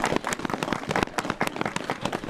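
Audience applauding outdoors, many separate hand claps in a dense, irregular patter.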